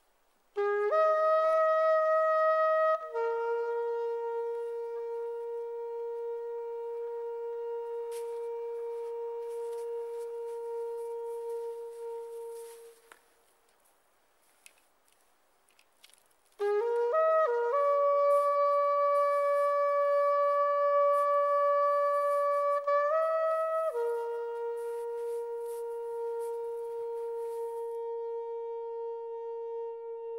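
Background music: a solo wind instrument playing slow phrases of a few long held notes, a rising start and then one note held for many seconds. It breaks off for about three seconds in the middle before a second, similar phrase begins.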